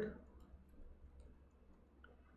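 Faint clicking of computer keyboard keys as a command is typed: several light, unevenly spaced keystrokes.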